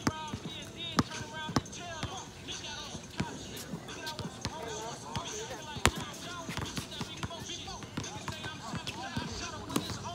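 Basketballs bouncing on a hard outdoor court: irregular single thuds a second or so apart, the loudest about a second in and just before the six-second mark, with voices chattering in the background.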